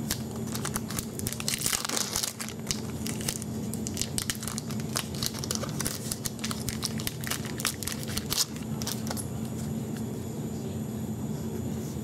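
Foil wrapper of a trading card pack being torn open and crinkled by hand: a dense run of crackles that thins out after about nine seconds.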